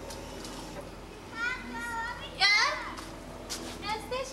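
A young child's high-pitched voice: a few short calls about a second and a half in, then a louder squeal with a falling pitch at about two and a half seconds.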